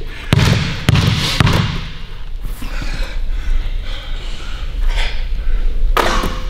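Basketball dribbled hard on a hardwood gym floor: three bounces about half a second apart in the first second and a half, then softer scuffing and movement.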